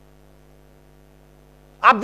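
Steady electrical hum made of several even tones, faint. A man starts speaking near the end.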